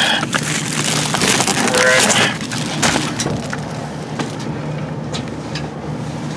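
Plastic trash bags rustling and crinkling as a dumpster is rummaged through by hand, with scattered knocks of packages and containers, loudest in the first couple of seconds. A steady low hum runs underneath.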